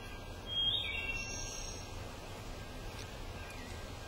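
A bird singing a short phrase of a few clear whistled notes, one of them rising, about half a second in and lasting about a second, over a steady low outdoor rumble.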